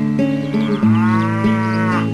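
A cow mooing: one long call that starts about half a second in and rises and falls in pitch, over background music.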